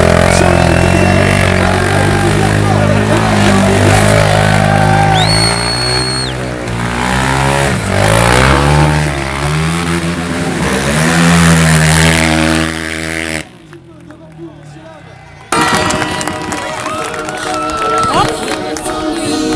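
Motorcycle engine revving up and down hard during a smoking burnout, over loud music. The sound drops away sharply for about two seconds near the end, then comes back.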